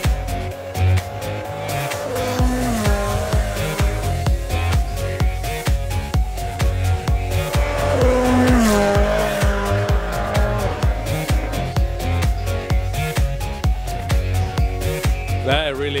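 Rally car engine revving over background music with a steady beat, its pitch rising and falling twice.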